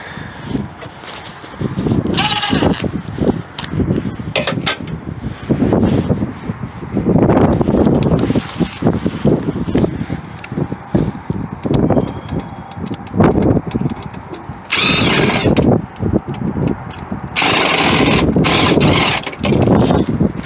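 Knocks, rattles and handling noise of hand work in a rooftop air-conditioning unit's control box. Two short, high-pitched buzzing spells come about three-quarters of the way through, the second one longer.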